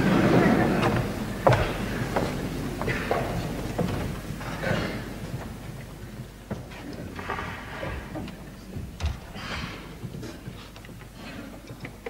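Lull on a concert stage between tunes: faint murmured voices and a few sharp knocks and thuds, fading toward the end, over a low steady hum.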